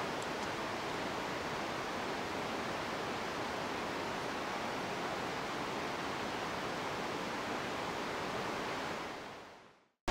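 Steady rushing of river water flowing below a bridge, fading out near the end.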